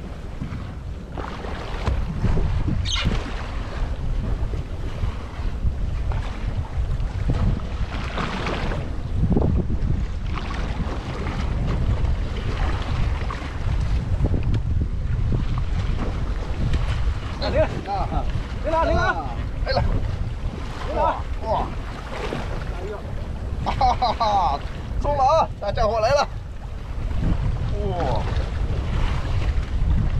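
Wind buffeting the microphone on an open boat deck at sea, over the rush of waves against the hull. People talk briefly in the second half.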